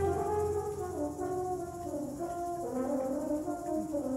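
High school wind ensemble playing a quiet passage of held brass chords, the notes shifting every second or so.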